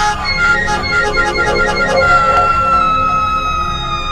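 Several people screaming in fright with wavering, shaky screams, giving way about halfway through to one long, high-pitched scream held on and slowly sinking in pitch.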